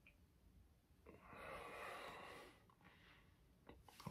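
Near silence, with one faint, soft breath out through the nose and mouth lasting about a second and a half, as a taster breathes out after sipping a strong rum.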